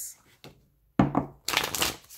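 A tarot deck being shuffled by hand: two short bursts of card rustling, one about a second in and one just before the end.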